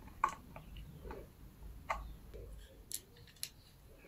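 Sharp plastic clicks and taps from handling a ring light and its stand mount, about five separate clicks spread over a few seconds.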